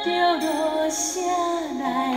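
Background song in Taiwanese Hokkien: a woman sings a slow, gliding melody between sung lines of lyrics, over sustained instrumental backing.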